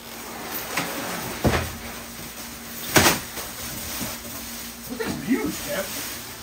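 A large incubator cabinet being turned round by hand, its plastic wrapping rustling, with two sharp knocks, about a second and a half in and again a second and a half later.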